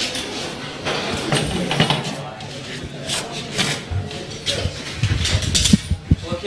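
People talking as they walk, with a few sharp knocks and clicks near the end.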